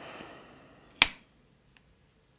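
A soft breathy exhale after a drink of water, then one sharp plastic click about a second in as the water bottle's cap is snapped shut.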